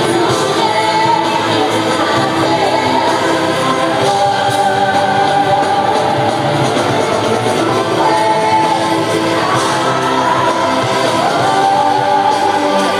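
Live band and singer performing in a large hall, heard loud from within the audience, with long held sung notes several times over the dense band sound.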